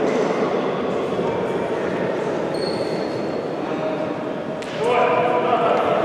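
Echoing sports-hall noise of indistinct voices, with a brief thin high tone near the middle. Louder voices calling out begin about five seconds in.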